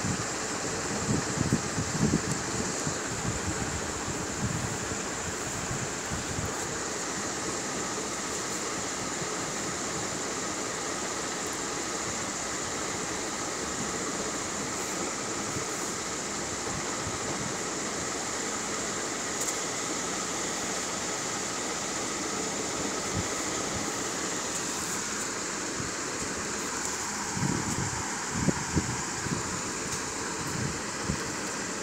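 Steady background hiss like a fan or air conditioner, with a faint high whine over it. A few low bumps come about a second in and again near the end, like a phone being handled.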